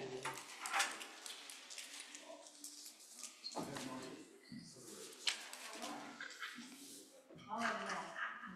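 Indistinct low voices in a room, with a couple of sharp knocks, one about a second in and one just past the middle.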